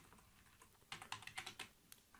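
Faint computer keyboard typing: a quick run of keystrokes starting about a second in.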